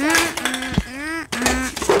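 Children's voices talking and exclaiming.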